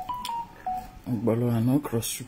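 A short electronic melody of single beeps, rising and then falling in pitch, like a phone notification tone. Then a man's voice holds one low drawn-out sound for most of a second, louder than the beeps.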